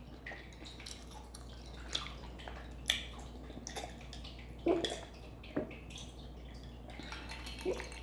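A woman sipping and swallowing a drink from a stemmed glass, heard as a scattering of short wet clicks and soft gulps.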